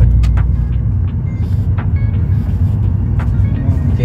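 Steady low drone of a BMW E36's 3.0-litre inline-six (M52B30 stroker) and its road noise, heard from inside the cabin while driving slowly.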